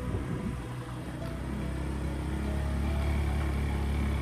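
Motorbike riding along a rough dirt track: a low engine and road rumble that grows louder over the second half, under background music.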